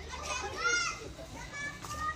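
Small children's high-pitched voices calling out in the background: a short rising-and-falling call about halfway through and a held high call near the end.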